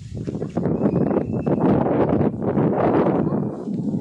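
Wind rushing over the microphone in uneven gusts, with a rustle of grass and crop leaves.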